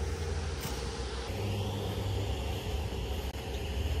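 Steady low rumble with a faint hiss underneath: outdoor background noise, engine- or traffic-like, with no distinct event in it.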